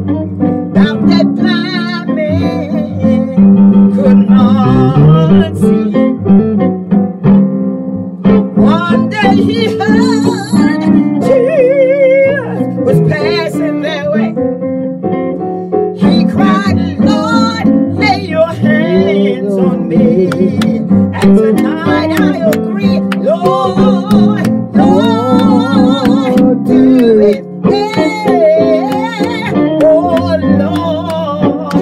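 A woman singing a gospel song with vibrato into a close microphone, over steady guitar accompaniment.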